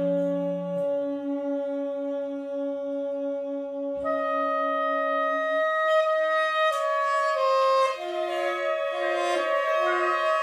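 Big band horn section of saxophones and brass holding long sustained chords. About four seconds in a higher layer of notes enters, and in the second half the notes change more often.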